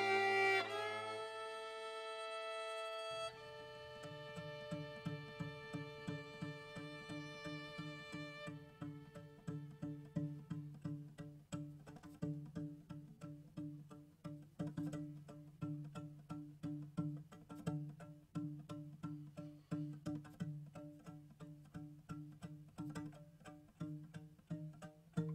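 Instrumental string music: a held bowed chord dies away over the first three seconds, then a plucked string figure repeats a low note quickly and evenly, about three to four plucks a second, with a higher note ringing steadily above it.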